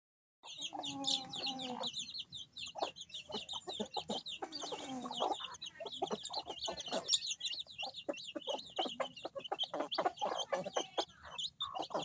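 Chicks peeping rapidly and without pause while the hens with them cluck, with a longer, lower call about a second in.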